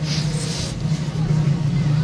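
An engine running steadily in the background, a constant low hum with an unchanging pitch, along with a haze of outdoor noise.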